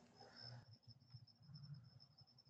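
Near silence, with a faint steady high-pitched whine.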